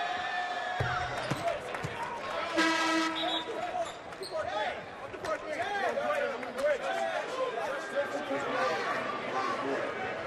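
Basketball arena sound around a free throw: a ball bouncing on the hardwood floor, a short horn with a steady pitch about three seconds in, then repeated sneaker squeaks on the court over a crowd murmur.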